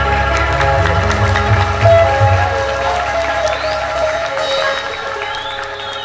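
Arranger keyboard accompaniment ending a Sundanese song: the closing chord and bass are held, then fade out over the last few seconds, with applause.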